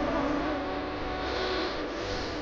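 Background music: a sustained melody line that wavers slowly in pitch over a soft hazy backing.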